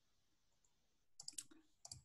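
A few faint computer mouse clicks in two quick clusters, the first about a second in and the second near the end, after near silence.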